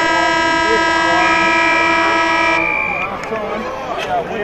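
Football ground's siren sounding one long, steady, horn-like blast of about three seconds, the signal for the end of the half.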